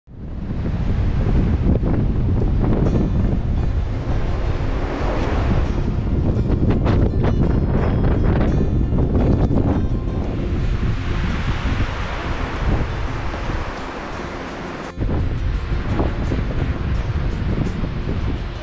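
Wind buffeting the microphone of a handheld camera outdoors, a loud, continuous low rumble with a brief break about 15 seconds in.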